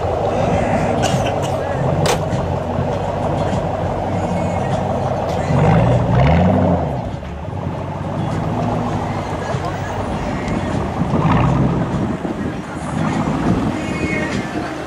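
Ford Mustang GT's V8 running as the car rolls slowly away, revving up with a rising note about six seconds in before easing off, and swelling again briefly near twelve seconds.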